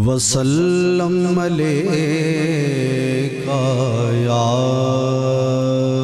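A man singing a naat: one long, drawn-out "Ya…" with wavering turns in the melody, his voice amplified through a microphone.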